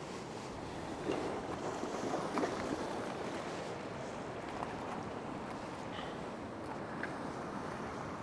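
Ocean wash surging over a rock ledge, a steady rush of surf with wind on the microphone, and a few faint knocks between about one and two and a half seconds in.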